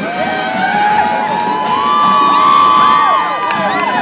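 A group of young women cheering and screaming, many high held shouts overlapping and swelling, over a crowd's cheering.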